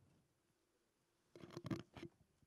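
Near silence broken about one and a half seconds in by a quick cluster of thumps and rustles of a live microphone being handled.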